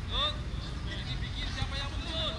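Short rising-and-falling shouted calls from players on the pitch, several in quick succession, over a steady low rumble.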